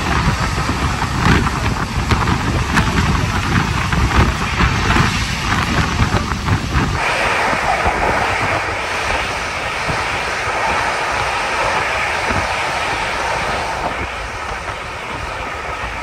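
Express train running at about 128 km/h, heard from inside the coach: a heavy rumble with irregular clatter from the wheels on the track. About seven seconds in, the sound switches abruptly to a thinner, hissier rushing as the train passes a station.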